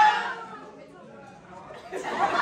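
Voices and chatter in a large hall. A loud drawn-out voice trails off in the first half second, leaving a low murmur of people talking, and the voices pick up again at the very end.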